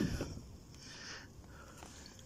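A brief splash of water at the start as a peacock bass is let go from a hand beside a kayak, followed by faint water sounds as the fish swims off.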